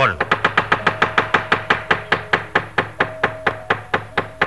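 Dalang's fast, even knocking with the cempala mallet on the wooden puppet chest and its metal keprak plates, about seven strikes a second, with a few held notes sounding beneath.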